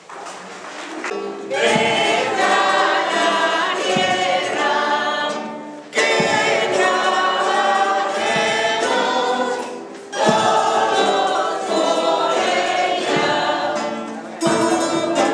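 A rondalla, a folk string group of guitars and round-backed lutes, playing a hymn while a small group of men and women sing along. It begins after a quiet first second and runs in phrases of about four seconds, each starting loud.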